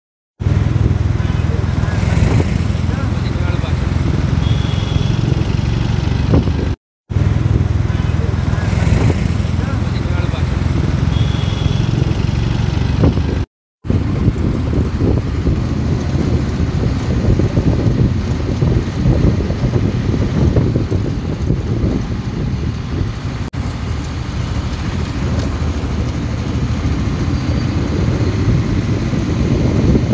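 Wind buffeting the microphone over road and engine noise from a vehicle moving along a street, with a low, gusty rumble. Two short drops to silence break the first half.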